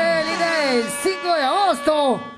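A voice swooping widely up and down in pitch over a held steady tone, like a producer's intro tag at the start of a music video.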